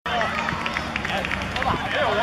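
Several voices calling and shouting over one another, with no clear words, around a youth five-a-side football game.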